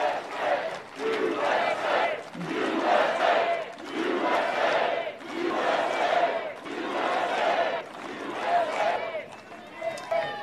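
A large crowd chanting together, the same short shout repeated over and over in a steady rhythm, dying away near the end.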